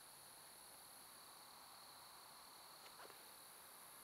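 Near silence: a faint steady drone of night insects, with one faint tick about three seconds in.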